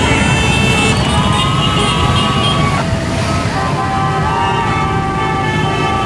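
Motorcycle and car engines running at low speed in a steady low drone, with music and held high tones over them.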